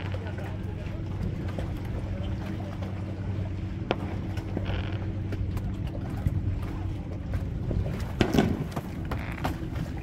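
A steady low motor hum, with a sharp knock about four seconds in and a louder thump a little after eight seconds.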